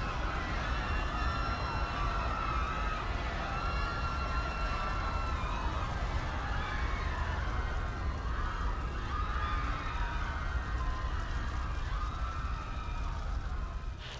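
Dramatic sound-effect bed: a steady low rumble with wailing siren tones rising and falling over it.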